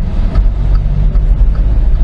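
Volkswagen up!'s 1.0-litre three-cylinder engine and tyres heard from inside the cabin while driving: a steady low rumble. The engine itself is kept faint by the car's good sound insulation.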